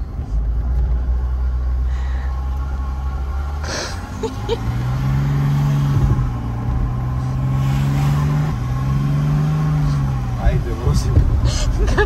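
Mercedes-Benz W126's engine heard from inside the cabin, running low and steady at first, then its revs rising and falling twice as the throttle is worked by hand with a string in place of the pedal.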